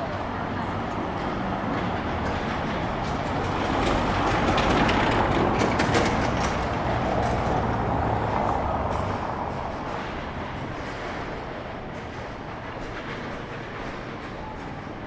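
A car driving past on a cobblestone street: engine hum and tyre rumble on the cobbles. It grows louder to a peak about five seconds in, then fades away.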